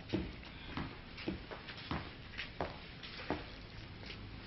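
A series of short knocks, about one every two-thirds of a second, over a low steady background hiss.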